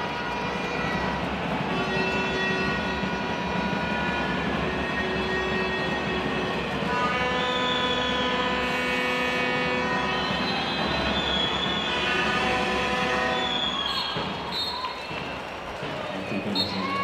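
Handball arena crowd din with sustained horn tones held at shifting pitches, a few sliding up and down, easing off in the last couple of seconds.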